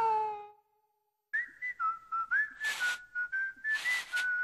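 Closing cartoon music slides down in pitch and fades out. After a short silence, a whistled tune of brief notes begins about a second in, with a few short hissing bursts between the notes.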